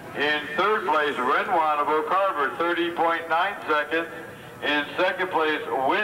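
Speech only: an announcer's voice reading out race results.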